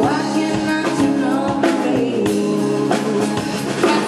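A woman singing live into a microphone over her strummed nylon-string acoustic-electric guitar, with drums keeping a steady beat behind them.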